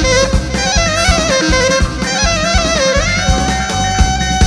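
Live Greek folk dance music: a clarinet plays a winding, ornamented melody over a steady drum beat, then settles on a long held note about three seconds in.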